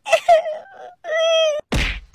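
A person's drawn-out wailing vocal cry in two parts, the second held on one steady pitch, followed near the end by a brief noisy thud-like burst.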